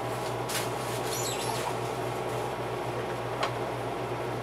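Steady indoor background hum and hiss, with a few light clicks and a brief high squeak about a second in.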